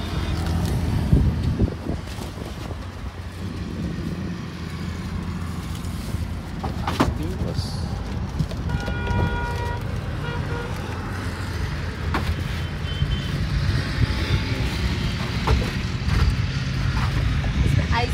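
Street traffic: a steady low engine rumble, with a vehicle horn sounding once for about a second roughly halfway through.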